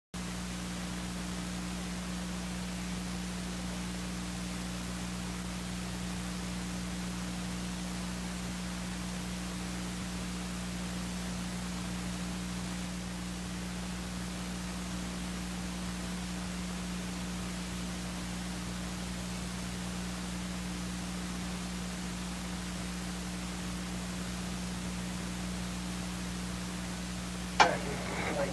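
Steady hiss and low electrical hum from an old recording, with no other sound, then a single sharp click just before the end.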